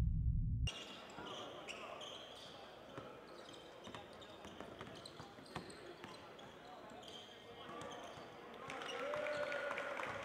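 A basketball scrimmage on an indoor hardwood court: the ball bouncing, with players' voices echoing in a large hall, fairly faint. It opens with the tail of a deep intro sound effect that cuts off suddenly within the first second.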